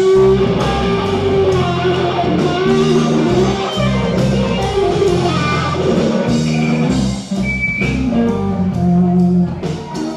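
Live blues-rock trio playing an instrumental passage: electric guitar lines over electric bass and a drum kit keeping a steady beat.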